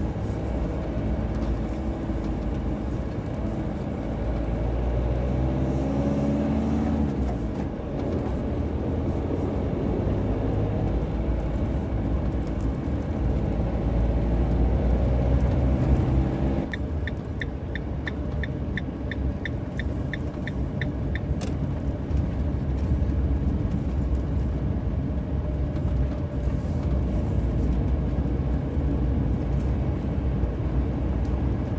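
Camper van's engine and road rumble heard from inside the cab while driving slowly, the engine note rising a few seconds in as it pulls away. Past the middle, a regular ticking, about three ticks a second, runs for about four seconds.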